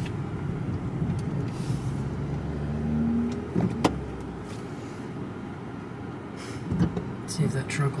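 Low rumble of a car heard from inside the cabin, easing off about halfway through, with one sharp click a little before the halfway point.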